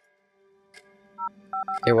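Telephone keypad tones: after a near-silent start, a rapid run of short two-note beeps sets in about a second and a half in, a number being dialled.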